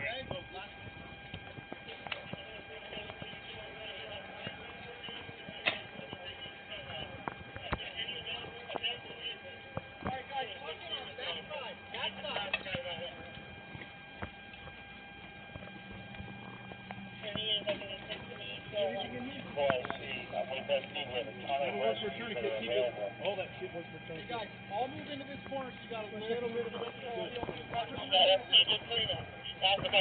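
Indistinct voices of people talking and calling out, louder in the second half, over movement noises and scattered short clicks. A faint steady high tone runs underneath, and a low hum joins about halfway through.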